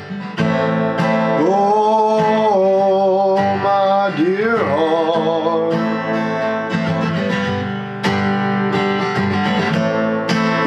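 Steel-string acoustic guitar strummed in a slow folk accompaniment. A man's wordless voice holds long, wavering notes over it for a few seconds, then again near the end.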